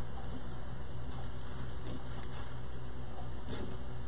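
Room tone: a steady low hum with a few faint, soft rustles.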